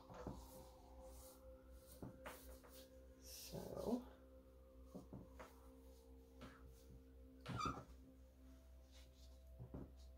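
Quiet room tone with a steady low hum, scattered faint clicks and rubs, and two brief louder sounds, one about four seconds in and one near the end.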